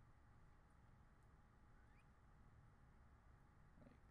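Near silence: faint room tone and microphone hiss.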